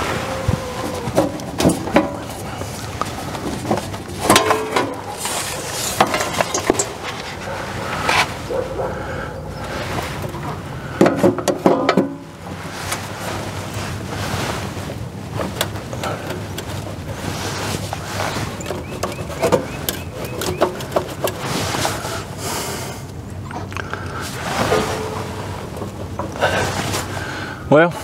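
Scattered metallic clicks, taps and scrapes as the sheet-metal cover on the bottom of an RV power pedestal is unfastened and pried off, with some low muttered speech now and then.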